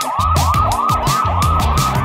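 Cartoon fire-truck siren sound effect, a fast up-and-down wail of about three sweeps a second, over a children's song backing track.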